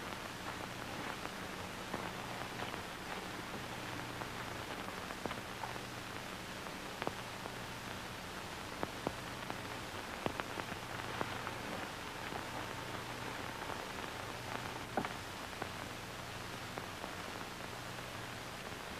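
Surface noise of an old film soundtrack: a steady hiss with a low hum and scattered clicks and pops, with no voices or music.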